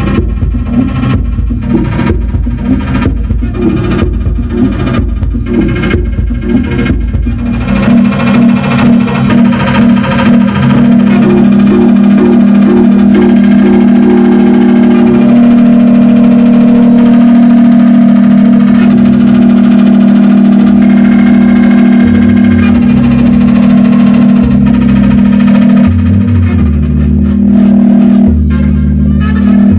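Eurorack modular synthesizer playing live electronic music: a rhythmic beat over heavy bass for the first several seconds, then the beat drops away and a loud, steady held drone carries on, with low bass notes coming back near the end.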